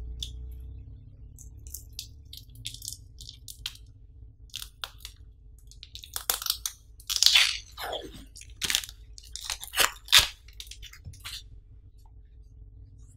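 A label sticker being picked at and peeled off a rolled-up large mouse pad: irregular crackles and scratchy rustles, sparse at first and loudest and densest in the second half, with a few sharp snaps.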